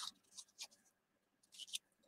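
Faint, brief rustles of cardboard trading cards from a 1990 Score baseball pack sliding against one another as the stack is flipped through by hand, with a few soft strokes about half a second in and again near the end.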